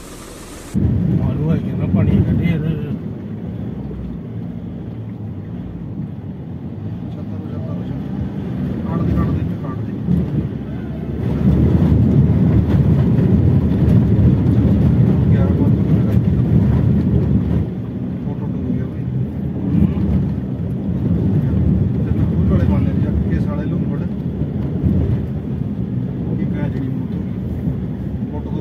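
Steady low rumble of a vehicle moving through floodwater, with indistinct voices now and then. It starts abruptly about a second in and is loudest for several seconds in the middle.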